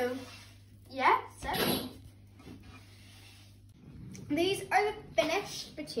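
Short bursts of indistinct talking over a steady low hum that stops a little over halfway through.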